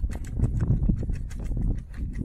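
Wind buffeting the microphone with a steady low rumble, over it many irregular sharp snaps and clicks from the fabric of a BASE jumper's hand-held pilot chute flapping in the wind.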